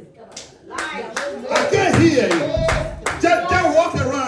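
Hand clapping, a run of sharp, uneven claps about two or three a second, with a loud voice over a microphone joining about a second and a half in.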